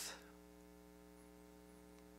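Near silence with a faint steady electrical mains hum.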